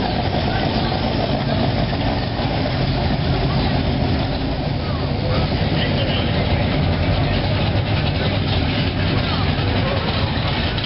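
Car engines running at low speed as a hot-rod coupe and then an early-1970s Oldsmobile Cutlass drive slowly past, a steady low rumble.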